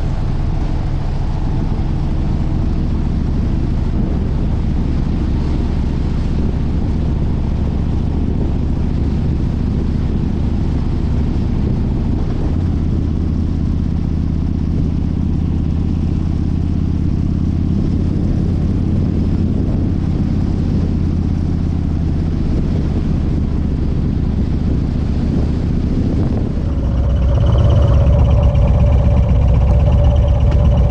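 Harley-Davidson V-twin motorcycle engine running steadily under way, its note shifting about twelve seconds in. Near the end a louder, closer engine sound takes over.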